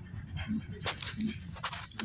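Phone being picked up and handled, with rubbing and knocking on its microphone about a second in and again near the end.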